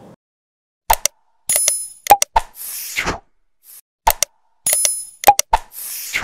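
Subscribe-button animation sound effects: a pair of sharp clicks, a short bright bell-like ding, two more clicks and a whoosh, the set repeating about every three seconds.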